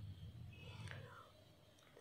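Near silence: room tone with a faint low hum and a few faint soft sounds in the first second.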